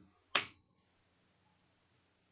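A single short, sharp click about a third of a second in, then near silence.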